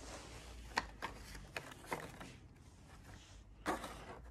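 Light handling sounds from an antique wooden writing box: a few small clicks and knocks in the first half, then a louder rustle near the end as old photographs and paper cards are lifted out.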